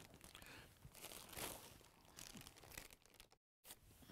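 Faint rustling and crinkling of a black plastic bag packed with yarn balls as it is handled, in a few short bursts.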